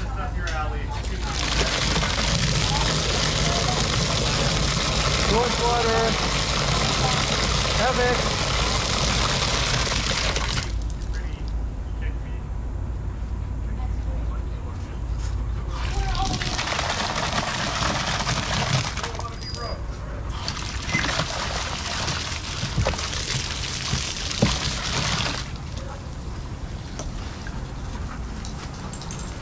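Garden hose spraying water in three spells: a long spray of about nine seconds, then two shorter sprays, each starting and stopping abruptly.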